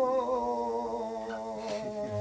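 Male flamenco singer (cante) holding one long sung note that wavers up and down and slowly fades, with no guitar strumming under it.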